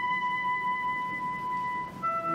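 Orchestral music: a woodwind holds one long, steady high note, which stops just before the end.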